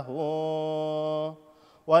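A man chanting the Gospel reading in Arabic in the Coptic liturgical reading tone, holding the last syllable of a phrase on one steady note for over a second. A short breath pause follows, and the next phrase begins near the end.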